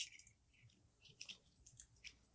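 Near silence, with a few faint clicks of a small spool of welding wire being handled.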